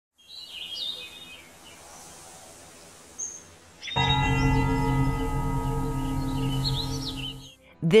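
Birds chirping over faint ambient noise. About four seconds in, a deep sustained musical tone with many steady overtones starts abruptly and holds, birds still chirping above it, until it stops shortly before the end.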